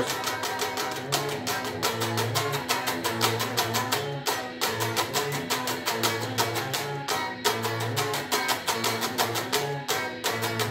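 Telecaster-style electric guitar strummed through the chorus of a punk-pop song, played along with a band recording: drums keep a steady, fast beat with a bass line underneath.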